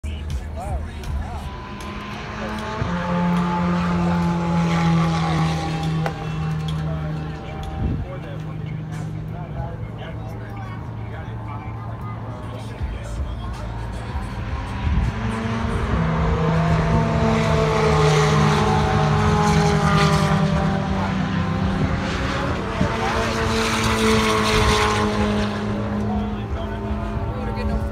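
Race cars running on the circuit, a continuous engine drone whose pitch slowly falls as cars go by, swelling louder twice.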